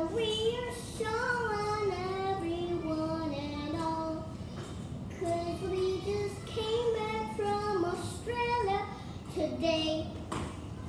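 A young girl singing a slow melody in held notes that step up and down, with a brief pause about halfway through.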